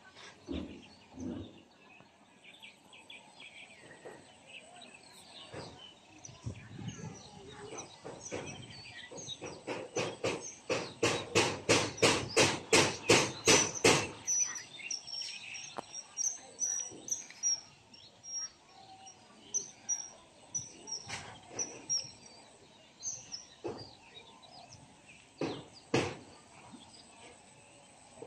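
A rapid, even run of about fifteen sharp strokes, roughly three a second, grows louder for several seconds and then stops suddenly. Small birds chirp outdoors afterwards, with a few scattered single knocks.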